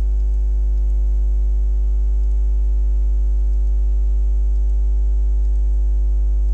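Steady electrical mains hum picked up by the recording, one low tone with a stack of evenly spaced overtones, unchanging throughout.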